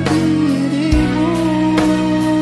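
Karaoke music: a long held, slightly wavering sung note over a backing track with a drum beat about once a second.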